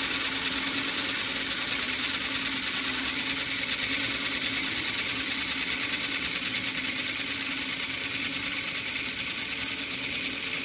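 Milling machine drilling into a round metal bar, its motor and spindle running with a steady hum and the bit cutting evenly throughout.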